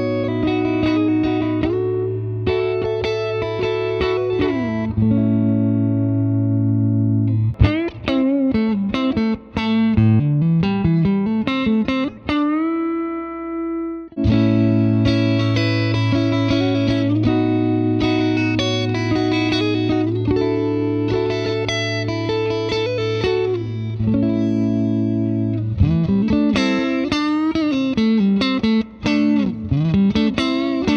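Electric Stratocaster guitar playing a short melodic passage over a held low note, with bent notes, then playing the same passage again from about 14 s in on a second Stratocaster. One of the two is a Squier Debut Stratocaster and the other a Fender Custom Shop GT11 Stratocaster, in an undisclosed order.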